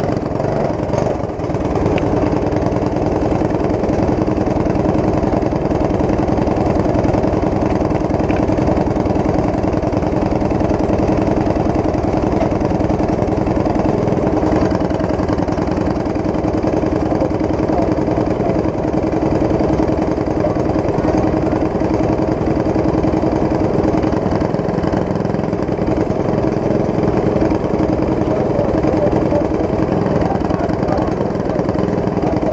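Racing kart engine idling steadily at a constant speed, with no revving.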